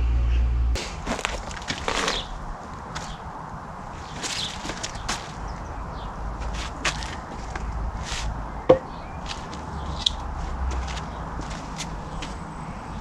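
Scattered rustles and light clicks and knocks of hands working in a garden bed, with one sharp click about two-thirds of the way through. A low hum cuts off about a second in.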